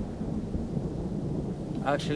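A low, steady rumble with no clear strokes, and a man's voice beginning right at the end.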